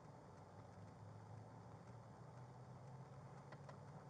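Near silence inside a parked police car: a faint, steady low hum with a few faint ticks.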